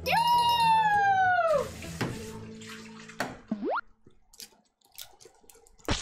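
Cartoon-style sound effects: a clear whistle-like tone sliding down in pitch for about a second and a half, then a quick short upward slide about three and a half seconds in.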